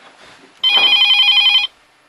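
Mobile phone ringing: one electronic trilling ring lasting about a second, starting about half a second in.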